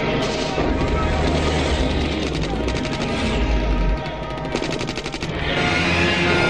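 Two bursts of rapid automatic-weapon fire, about two and a half and four and a half seconds in, with a deep rumble between them, over orchestral film music.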